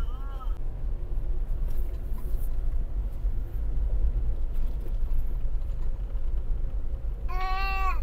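Steady low rumble of a car driving slowly along an unpaved gravel road, heard from inside the cabin. A brief high-pitched call cuts in near the end.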